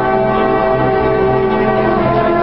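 Brass band playing slow, sustained chords, the notes held steady.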